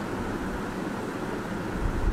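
Steady background noise, an even hiss, with a low rumble rising near the end.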